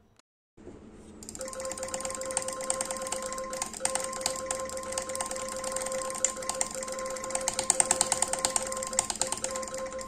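Rapid, continuous button clicking on a DA Luna V2 gaming mouse during a click-speed test, about nine clicks a second, starting about a second in. Steady background music plays underneath.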